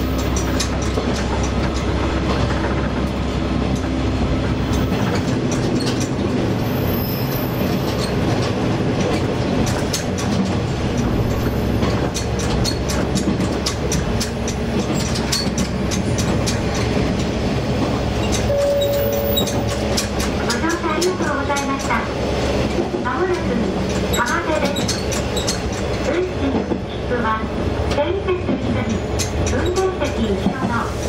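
Diesel railcar running along the track, heard from the driver's cab: a steady rumble of engine and wheels, with the low engine drone dropping away about five seconds in. Sharp clicks from the wheels over the rails come through in the second half.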